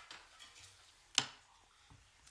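Quiet room tone with a few light clicks and one sharp click a little over a second in.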